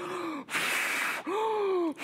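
A man miming blowing up a ball by mouth, blowing hard into his fist: a short falling vocal sound, a strong puff of breath lasting under a second, then a falling groan.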